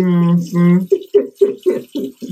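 Laughter: a drawn-out voiced sound, then a run of short laughs about four a second, over a tap running into a sink.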